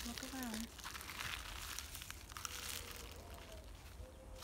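Footsteps crunching and rustling through dry pine needles and leaf litter: faint, irregular crackles underfoot, with a soft voice briefly near the start.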